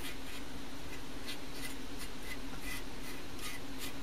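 A metal rod scraping and poking through crumbly magnesium nitride and magnesium oxide residue, making a series of short, irregular scratches over a steady low hum.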